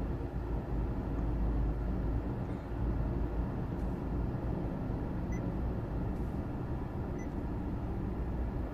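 Steady low rumble inside a Honda Civic's cabin with the car idling, and a couple of faint short beeps from the touchscreen as it is tapped, about five and seven seconds in.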